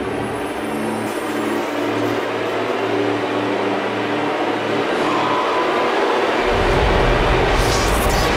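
Trailer sound design: a dense, rushing whoosh over a low droning tone, swelling slowly. A deep bass rumble comes back in about six and a half seconds in.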